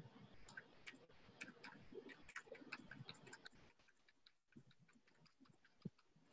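A whiteboard duster being wiped across a whiteboard, faint, with a quick irregular patter of small clicks and soft rubbing that thins out about halfway through.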